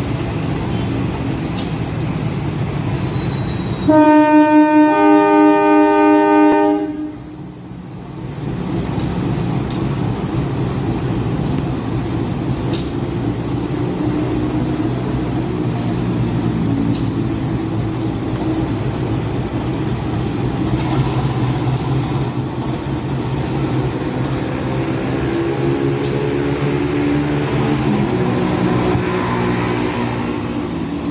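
Diesel-electric locomotive (KAI CC206) sounding its horn once about four seconds in: a loud chord of about three seconds, with a second tone joining a second after the first. Its diesel engine runs steadily throughout, the engine note rising in the second half as the locomotive moves along the platform.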